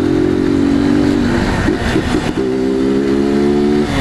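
Street motorcycle's engine running at steady, held revs under way, breaking off briefly about two seconds in before settling back to a steady pitch, with wind noise from riding at speed.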